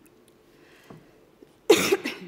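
A woman coughing once, sharply and loudly, into a lectern microphone near the end.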